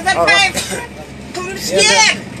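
Speech in two short bursts, near the start and near the end, over a steady low hum.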